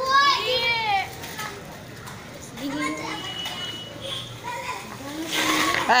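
Children's voices shouting and calling, with a loud, high-pitched drawn-out call in the first second and scattered shorter calls after it.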